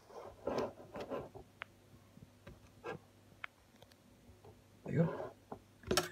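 Quiet room with a faint murmuring voice in two short patches, a few light isolated clicks between them, and a faint steady low hum.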